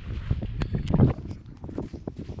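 Fingers digging and scooping in dry sand around a plant's base: a run of irregular gritty scrapes, the loudest about a second in, over low wind rumble on the microphone.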